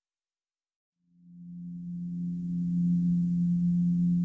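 Background music: after about a second of silence, a single low held note fades in and swells, then holds steady.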